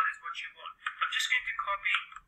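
Speech only: a voice talking continuously, thin and tinny as if over a telephone line.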